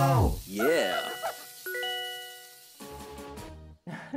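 A two-note ding-dong doorbell chime: the second note strikes about half a second after the first, and both ring on until nearly three seconds in. Just before it, a singing voice slides down and off.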